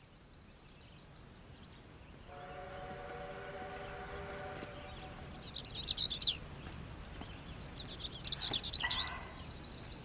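Quiet outdoor ambience with small birds chirping in two short bursts, about six seconds in and again near nine seconds. Earlier, a steady chord of several held tones sounds for about two and a half seconds.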